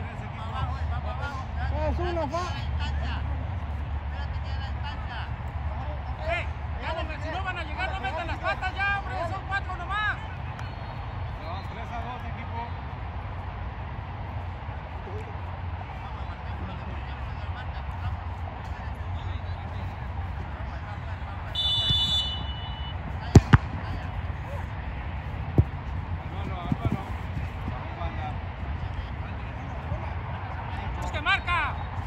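Players shouting across a soccer pitch, then a short referee's whistle blast about two-thirds of the way through, followed within a few seconds by several sharp thuds of the ball being kicked, the loudest sounds.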